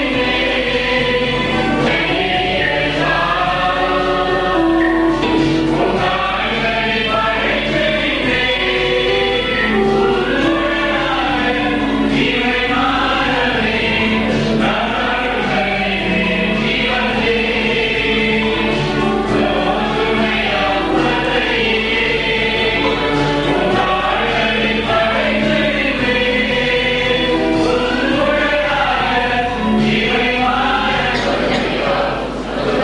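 Church choir singing a hymn, many voices together without a break, over a steady low hum.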